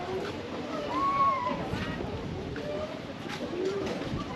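Indistinct voices of other people talking in the distance, a few short phrases over steady outdoor background noise.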